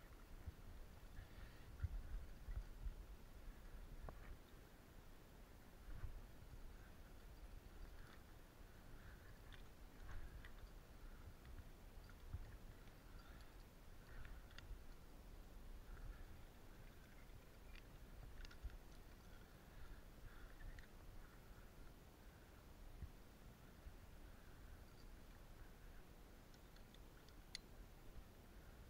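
Near silence, with faint scattered clicks and soft low bumps: a climber's hands, shoes and rope moving on a rock slab, picked up by a body-worn action camera.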